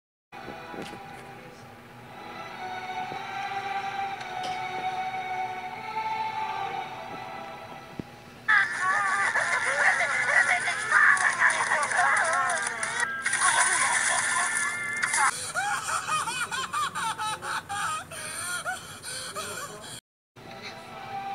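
Soft music for the first eight seconds or so. Then loud, high, wavering cartoon voices wailing and sobbing, with a couple of brief breaks.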